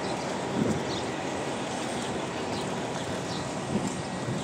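Steady city street noise, an even wash of traffic sound with no single source standing out.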